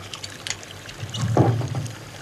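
A pause in spoken film dialogue, holding a steady low background hum with a brief soft sound about a second and a half in.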